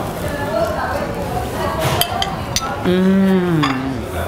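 Knives and forks clinking on ceramic plates, a few sharp clinks about halfway through, followed by a woman's long hummed 'mmm' of enjoyment while tasting the food, dipping in pitch at the end.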